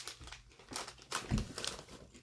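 A Fritos corn chip bag crinkling as it is squeezed and handled, in a quick run of sharp crackles that grow louder in the second half. A dull low bump comes about two-thirds of the way through.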